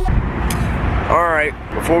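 Steady low rumble of a car cabin, with a single click about half a second in; the rumble drops away about a second and a half in.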